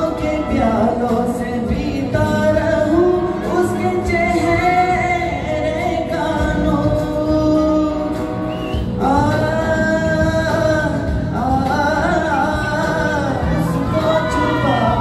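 A man singing into a handheld microphone over backing music, holding several long notes that waver with vibrato.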